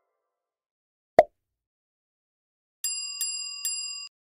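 A single short click about a second in, then a bell sound effect struck three times in quick succession, its bright tones ringing on between strikes, marking the change to the next quiz question.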